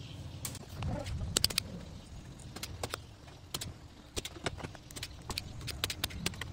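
A circuit board and repair tools being handled. There is a low shuffling rumble for the first second or so, then a string of sharp, irregular clicks and taps as a soldering iron and desoldering pump work on the underside of a TV power supply board to desolder its switching regulator IC.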